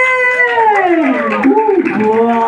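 A high-pitched woman's voice drawn out in long, slowly falling sliding tones, with a second voice overlapping about halfway through.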